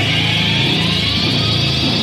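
Loud, dense indie rock music with distorted guitars in a sustained closing wash, a tone rising slowly in pitch through it.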